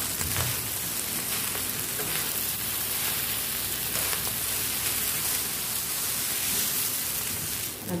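Noodles and vegetables sizzling steadily in a non-stick pan on a high flame while being tossed and stirred with a utensil, with a few light scrapes against the pan.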